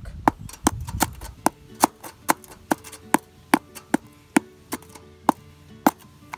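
A hand-held rock pounding fence staples through chicken wire into a wooden board: a steady run of sharp knocks, about two or three a second.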